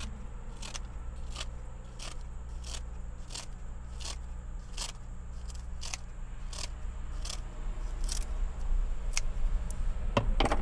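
Kitchen scissors snipping a sheet of nori, a steady run of crisp snips about two a second.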